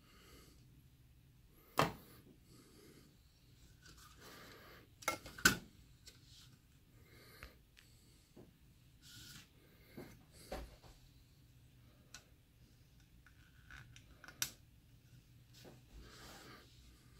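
Faint handling noise of a capacitor being fitted to a router circuit board: a few sharp clicks and taps, the loudest about two seconds in, a pair around five seconds and another near the end, with light rubbing and rustling between them.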